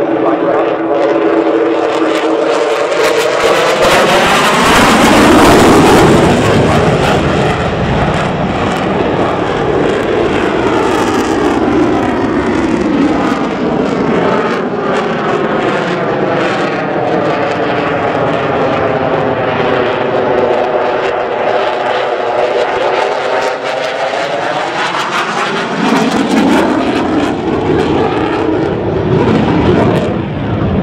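F-16 fighter's afterburning turbofan (General Electric F110) running at high power through a display pass. The jet noise swells loudest about five seconds in and again near the end, with sweeping tones that fall and rise as the aircraft passes.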